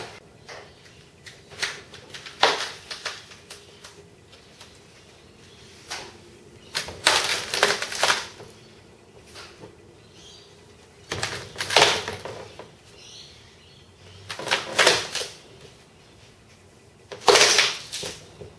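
Knocks, clatter and cracking as a two-part wing mould is pried apart with a screwdriver along its seam to release the cured composite wing. The sounds come in separate clusters every three to four seconds, the loudest about twelve seconds in and near the end.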